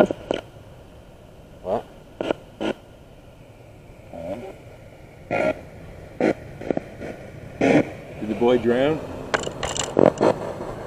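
Indistinct speech: short, scattered fragments of voice between quiet stretches, with a brief murmured phrase near the end.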